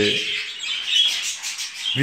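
Budgerigars chattering and chirping in their cages, a high-pitched twittering with a few louder chirps about a second in.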